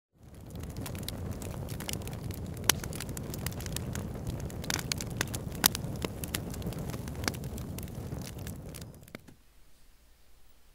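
Wood campfire crackling: a steady low rumble with many sharp, irregular pops, fading out about nine seconds in.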